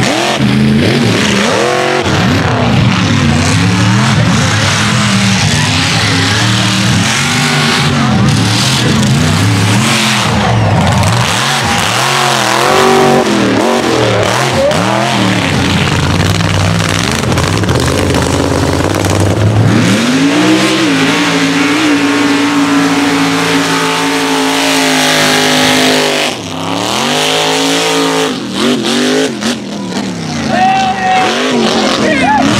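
Mega mud trucks' engines revving hard on race passes through the mud pits, their pitch sweeping up and down again and again. About two-thirds of the way through, one engine is held steady at high revs for several seconds, dips briefly, then climbs again.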